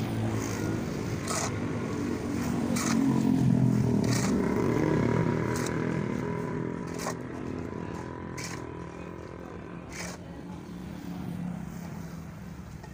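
Shovel and hoe blades scraping through a heap of sand-and-cement mortar, a stroke about every second and a half. A passing motor vehicle's engine swells and fades under it and is loudest around four seconds in.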